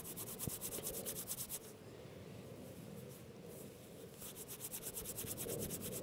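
Tulip tree bark rubbed quickly back and forth between the palms, a faint rapid dry rasping, with a quieter pause of about two seconds in the middle. The fibres are being worked finer into fluffy tinder so that they will catch a spark.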